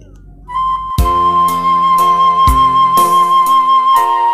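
Roland electronic keyboard playing a Minang pop accompaniment: a lead voice enters about half a second in and holds one long high note, and a drum beat with bass comes in about a second in, hitting roughly twice a second.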